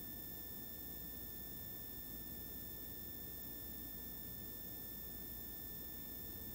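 Room tone: a steady low hiss with a few faint, high, unchanging tones, and no distinct sounds.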